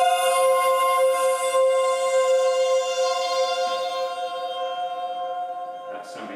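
Synthesised electronic chord of a few held notes played through loudspeakers, the lowest the loudest, sustained and slowly fading before dying away near the end. It is a sonification of a protein's simulated state, the notes' timbre and length set by the state's free energy.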